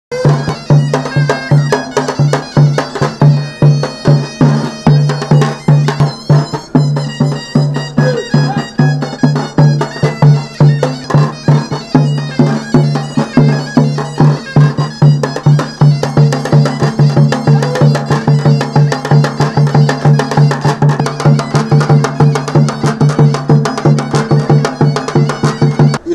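Traditional folk music: a reedy wind instrument holding a steady low drone over a regular, fast drumbeat.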